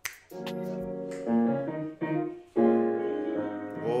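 Piano playing slow sustained chords, about four struck in turn and each left to ring.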